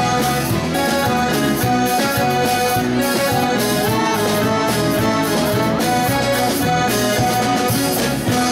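A band playing an instrumental passage of a song with a steady beat and sustained melody notes, without singing.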